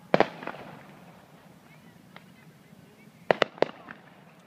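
Distant aerial fireworks shells bursting. A loud double bang just after the start echoes away over about a second, with a smaller pop half a second in, then a quick cluster of three or four sharp bangs near the end.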